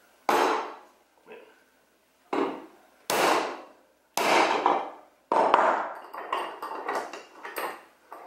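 Hammer blows on a 3D-printed plastic part clamped in a metal vise: about five hard strikes a second or so apart, each ringing briefly, then a run of lighter, quicker knocks. The part holds and does not break under the blows.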